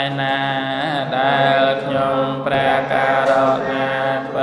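Pali text chanted in a slow recitation melody. Long held notes follow a steady line, with short breaks between phrases.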